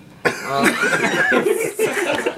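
Several people suddenly breaking into loud, raucous laughter and exclamations, with cough-like bursts, starting about a quarter second in.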